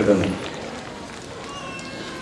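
A man's voice through a public-address system ends in the first moments, then low outdoor background murmur from a gathered crowd.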